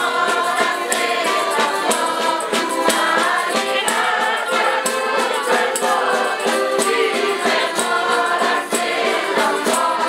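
A group of people singing a folk song together to instrumental accompaniment, with a steady beat.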